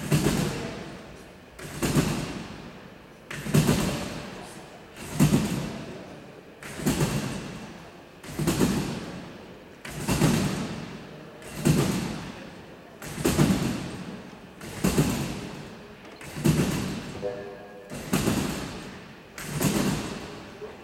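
Trampoline bouncing on a Eurotramp competition trampoline: a regular thud of landings on the bed about every 1.7 seconds, each ringing out in a large hall.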